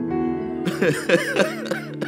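Keyboard playing soft, sustained worship chords. A little over half a second in, a short, loud burst of a person's voice sounds over it, uneven and breaking, then dies away.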